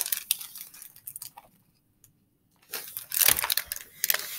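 A hardcover picture book being handled, held up and then lowered: paper and board rustling with a few light knocks, a short silent pause in the middle, then more rustling and a dull knock near the end.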